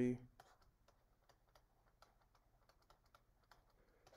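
Faint, irregular light clicks and taps of a plastic stylus on a graphics tablet as handwriting is put down.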